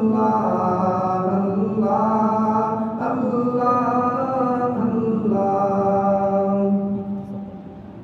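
A man chanting an Urdu devotional munajat with no accompaniment, repeating 'Allah' in long, held, melodic notes that slide from one pitch to the next. The voice fades out about a second before the end.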